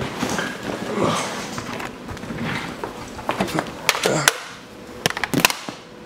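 Handling noise from a handheld camera being carried and moved, with rustling and a run of sharp clicks and knocks in the second half, as of objects being picked up and set down.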